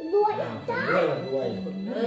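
Voices, a child's among them, over background music.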